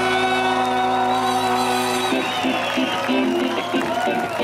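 Live ska-rock band with guitar, double bass, drums and a brass section, holding a long sustained chord that breaks into a choppy, rhythmic groove about two seconds in.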